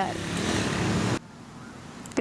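Steady outdoor street noise, a traffic-like rumble with no voice in it, that cuts off abruptly just over a second in and leaves only a faint hiss.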